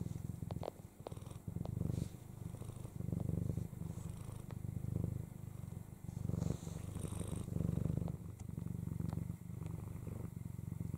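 Snow Lynx Bengal mother cat purring steadily while her newborn kittens nurse, the purr swelling and easing with each breath about every second and a half. A few soft clicks sound in the first couple of seconds.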